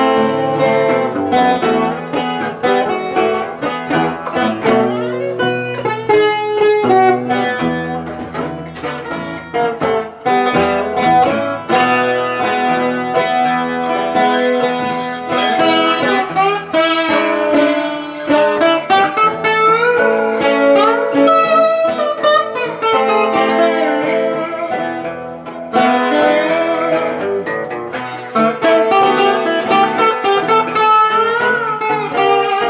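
Acoustic guitars playing an instrumental blues passage, the lead line full of short sliding and bent notes.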